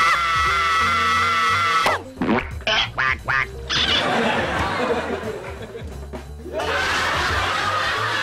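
A woman's long, drawn-out shriek that cuts off about two seconds in. It is followed by a run of short, cartoonish quack-like comedy sound effects as a cream cake is smashed into a man's face, and then sitcom laughter over music near the end.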